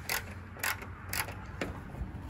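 Scrubbing on a pickup truck bed: four short scratchy strokes about half a second apart.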